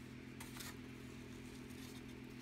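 A faint steady machine hum with two light ticks about half a second in.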